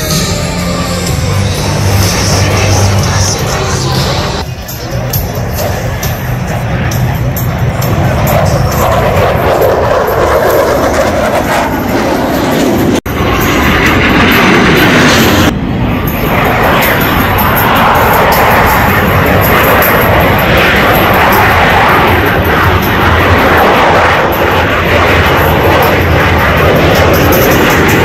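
Loud jet noise from Blue Angels F/A-18 Super Hornets flying low overhead in a demonstration pass, with air-show PA music under it. The noise is broken by a couple of abrupt cuts partway through.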